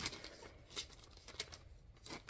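Faint rustling and a few light ticks of a paper booklet and a plastic sleeve being handled, as the booklet is slid back into the plastic.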